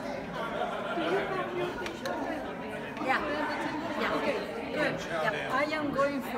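Indistinct chatter of many people talking at once in a large room, with overlapping conversations and no single voice standing out.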